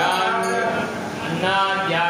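A man chanting a Sanskrit mantra through a microphone, in long, held tones. The voice eases off briefly about a second in and then picks up again.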